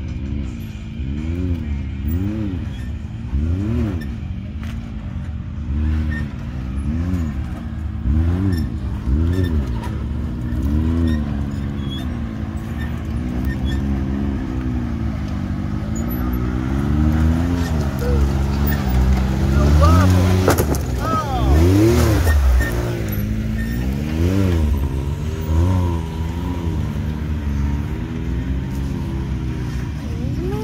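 Side-by-side UTV engine revving up and down in repeated throttle blips, roughly one a second, as the machine crawls over rocks; the loudest, highest revs come about two-thirds of the way through.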